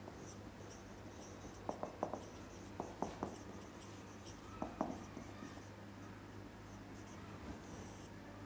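Marker pen writing on a whiteboard: faint short squeaks and taps in small clusters as the letters are drawn.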